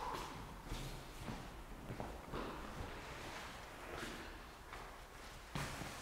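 Faint, scattered scuffs and rustles of someone shifting on a foam exercise mat while easing down into a split, with a few soft taps.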